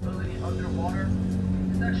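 Airboat engine and propeller running at a steady drone, with a man's voice speaking over it.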